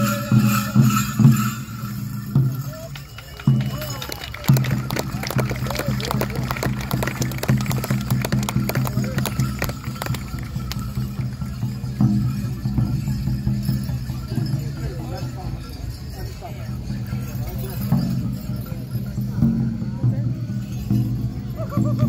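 A group of men singing an Apache Crown Dance song together in low voices, accompanied by a steady beat on hand drums. The singing breaks off briefly about three seconds in, then carries on.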